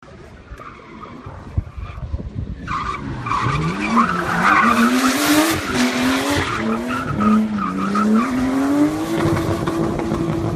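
Nissan C33 Laurel's turbocharged RB25DET straight-six revving up and down through a drift, with its rear tyres skidding. It grows much louder about three seconds in as the car comes near.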